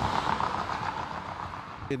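Household water pump running beside a water storage tank: a steady rushing noise that eases off slightly toward the end.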